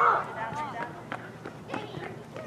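Shouting voices on a soccer pitch, from players and the sideline, with a loud shout right at the start. A few short, sharp knocks are scattered through it.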